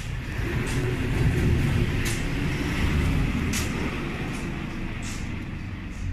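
A motor vehicle passing on the street: a low rumble that swells about a second in and slowly fades. Three short faint ticks come at even intervals during it.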